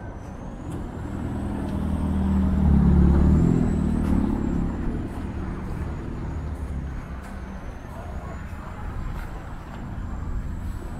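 A motor vehicle engine passing close by on the street, growing louder to a peak about three seconds in and then fading away, over steady traffic noise.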